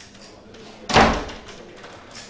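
A single loud thump about a second in, dying away within half a second.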